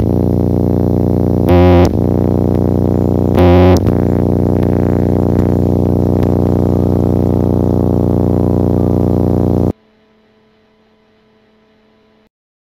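Loud, distorted electronic drone: a steady low buzz with two brief louder surges in the first few seconds. It cuts off suddenly about ten seconds in, leaving only a faint hum.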